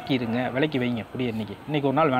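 A man speaking, his voice sounding thin and buzzy because of the narrow recording.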